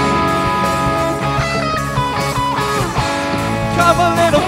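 Live rock band playing an instrumental passage: electric guitars over bass guitar and drums, with no vocals.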